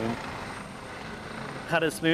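Helicopter hovering close by, a steady rotor and engine noise between stretches of speech.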